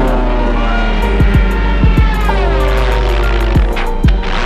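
Orchestral cartoon score with several low drum hits over a steady low drone; about halfway through, a run of notes slides downward.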